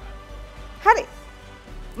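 A single short vocal exclamation, "are!", about a second in, rising sharply in pitch, over a faint steady background music bed.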